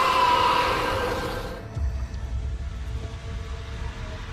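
Film soundtrack: tense music with a falling, siren-like whine in the first second, giving way about a second and a half in to a quieter low rumble.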